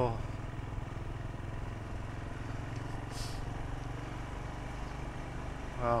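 Royal Enfield Himalayan's single-cylinder engine running steadily at low town speed, heard from the rider's seat, with a brief hiss about three seconds in.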